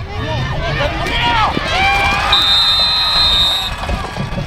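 Players and spectators shouting over one another as a football play ends. About two seconds in, a referee's whistle sounds one long, steady, high blast lasting over a second.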